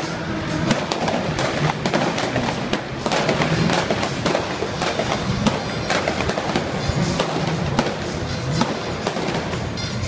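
Show music playing over loudspeakers, with rapid, irregular pops and bangs from pyrotechnic effects set off on the stunt-show set.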